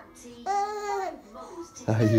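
A baby's short high-pitched vocal sound: one held note about half a second long that falls away at its end, with fainter baby noises after it.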